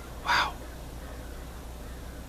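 A single short bird call, loud and sharp, about a third of a second in, against a steady low hum.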